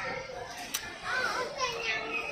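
A child's voice making high, sliding vocal sounds, with one sharp click a little before the middle.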